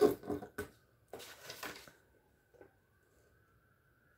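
Handling noise as cables, packaging and a paper manual are moved about in a cardboard box: a few sharp clicks and knocks, then a rustle lasting about a second. In the quieter second half a faint steady high whine is heard.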